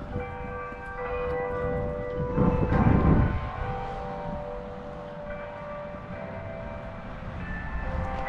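Church bells ringing, with several sustained, overlapping tones hanging in the air, and a brief low rumble about two and a half seconds in.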